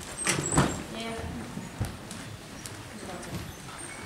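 A few sharp knocks, the loudest about half a second in, over quiet murmuring voices in a hall.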